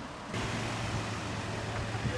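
Nissan Xterra SUV's engine running as it pulls away slowly, a steady low hum under a light even hiss.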